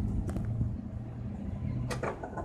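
Low, steady engine hum from a commuter train as it pulls away, with a single sharp click near the end.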